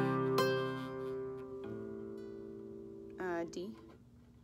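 Nylon-string classical guitar capoed at the fifth fret: a G-shape chord strummed and left to ring, then a second chord strummed about a second and a half in, ringing down slowly.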